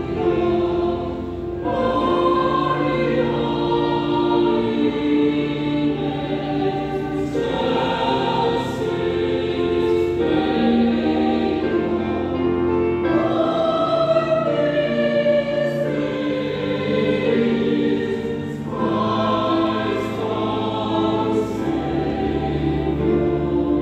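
Mixed church choir of men and women singing a Christmas cantata song in harmony, with keyboard accompaniment. The singing moves in long held phrases of several seconds each.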